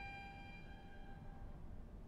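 A violin's high held note fading away over about a second and a half, leaving a faint room hush.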